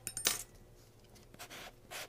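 A couple of sharp clinks at the start, then a short scrape about one and a half seconds in and a light tap near the end: small pottery tools knocking against slip containers as they are picked up.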